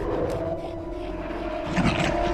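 Large creature growling, a film sound effect, over a steady held tone; a short rising cry comes near the end.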